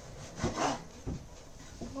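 A knife sawing through slices of bread on a wooden cutting board in two short scraping strokes, cutting the bread into halves.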